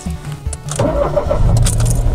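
Car engine starting and revving, a loud low rumble that swells about a second in, over background music.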